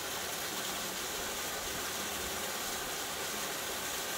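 Small waterfall pouring over rock ledges into a pool: a steady, even rush of water.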